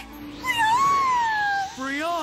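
Brionne's cartoon creature cry, a high, squeaky voiced call: one long call that rises and then falls, then a second shorter call near the end. Soft background music plays under it.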